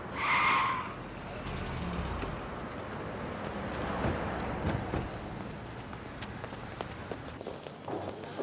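A car driving past close by, its engine and tyres giving a steady rush for several seconds. A short, high squeal is heard in the first second.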